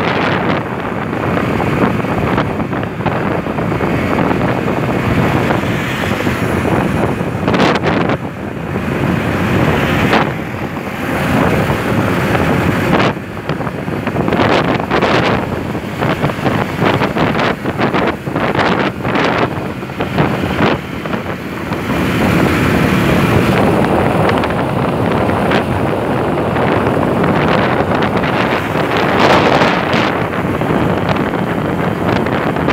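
Wind rushing and buffeting over the microphone of a phone carried on a moving motorcycle, loud and gusting, with the motorcycle's running engine underneath.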